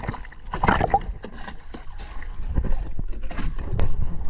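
Sea water splashing and lapping at the surface against a boat's hull, in irregular bursts over a low rumble, growing louder near the end.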